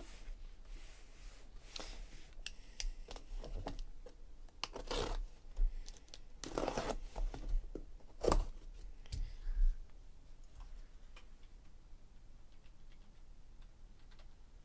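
A hand-held blade slitting the packing tape on a cardboard case, with tape tearing and cardboard scraping: several long rasping strokes and a few sharp clicks.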